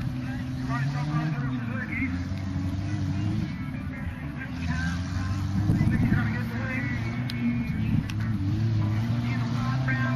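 Suzuki SJ Sierra 4WD's engine running and revving up and down as it drives the course, its pitch rising and falling every second or two. Voices talk faintly in the background.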